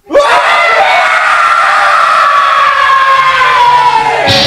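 A single long scream that starts abruptly right after a silence and holds for about four seconds, its pitch slowly falling.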